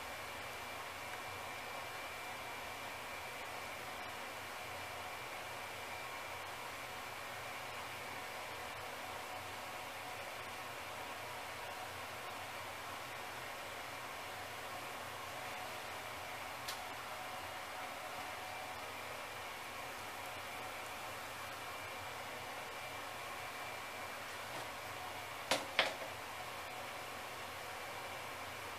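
Steady faint hiss with a faint steady hum, like a small room's background noise. One small click about two-thirds of the way in, and two sharp clicks close together near the end.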